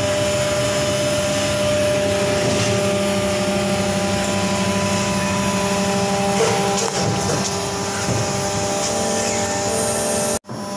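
Haitian plastic injection molding machine running, a steady machine hum made of several held tones over a noisy drone, with a few faint knocks about six to seven seconds in.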